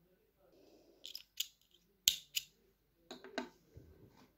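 Hands handling a crocheted doll head and its embroidery thread: soft rustling with a few sharp clicks, two close pairs about one and two seconds in and a short cluster near the end.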